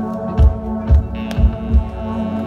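Intro of a live worship song: a held chord rings steadily under a low thumping pulse about twice a second, with a brighter, higher layer joining about a second in.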